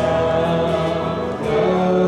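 A live worship band playing a slow song on acoustic guitar, electric guitar, bass and keyboard, with singing.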